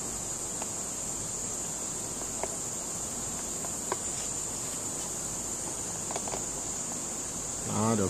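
Thermoforming machine running during its heating stage: a steady high-pitched whine over a low hiss, with a few faint clicks.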